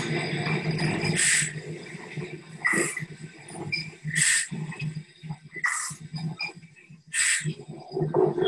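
A semi-automated whisky bottle filling and corking line running: a steady hum with a short hiss about every one and a half seconds.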